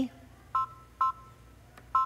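Embroidery machine touchscreen beeping as its keys are tapped with a stylus: two short beeps about half a second apart, and a third near the end, each a brief sound of two pitches together.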